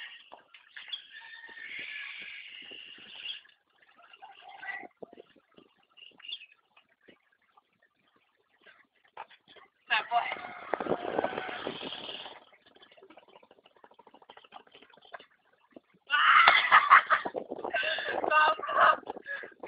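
Players' voices calling and shouting on a futsal court, with short sharp knocks scattered between them; a louder burst about ten seconds in, and the loudest shouting near the end.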